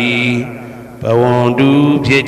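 Theravada Buddhist chanting in Pali, a low voice holding long, steady tones. The chant fades briefly about half a second in and picks up again about a second in.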